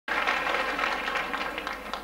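Applause: a dense patter of many hands clapping, easing off near the end as the band is about to start playing.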